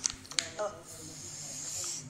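A clear plastic snack pouch rustling as it is handled, heard as a steady high hiss that grows slowly louder through the second half.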